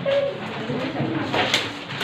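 A bird cooing among low voices, with a brief sharp rustle about one and a half seconds in.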